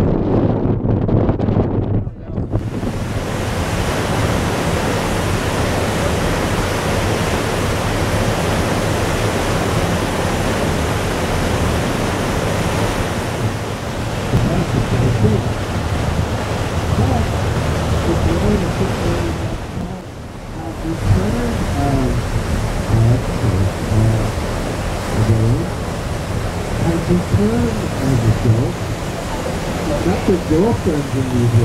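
Wind and sea noise on an open boat deck, a steady rushing hiss with brief drops at about two seconds and twenty seconds in. Indistinct voices show faintly through it in the last third.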